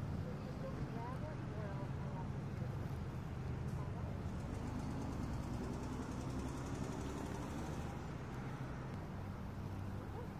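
A car engine idling steadily with a low, even hum, with faint muffled voices over it in the first couple of seconds.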